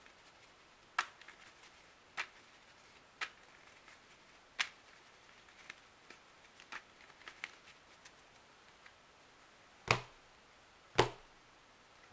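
Playing cards being thumbed through in the hand, with sharp snaps about once a second and lighter ticks between them, then two louder slaps near the end as cards are laid down on the table.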